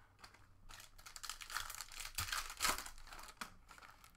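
Foil wrapper of a Panini Certified basketball card pack being torn open and crinkled, a crackling rustle that builds about a second in and is loudest near the middle.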